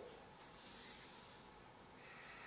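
A man's faint breath, an exhale that starts about half a second in and fades over about a second.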